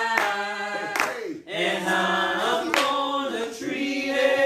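Voices singing a worship song with hand clapping on the beat, about four claps a second. The clapping stops about a second and a half in while the singing carries on with long held notes, then the claps come back near the end.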